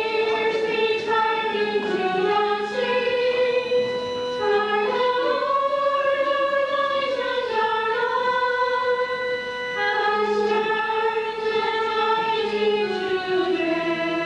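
Choir singing a slow hymn, long held notes moving in a melody over steady low accompanying notes.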